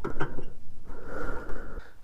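A person's breathing, with a long breath out about a second in and a few soft clicks near the start.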